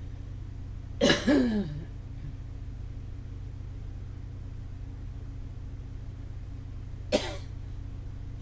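A woman coughs about a second in, two quick coughs close together, over a steady low hum. A brief, sharp vocal sound follows near the end.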